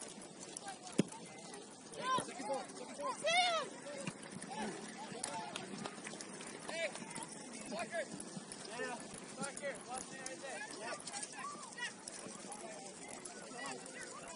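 Distant shouts from players and coaches carrying across an open grass soccer pitch during play, loudest two to four seconds in. A single sharp knock about a second in, a soccer ball being kicked.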